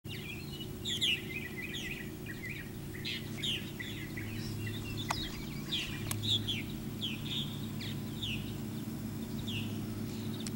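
Birds calling: a steady series of short, high, downslurred chirps, one or two a second, over a low steady hum. Two sharp clicks sound about a second apart midway.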